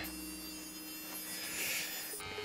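Electric hair clipper running with a faint, steady buzz.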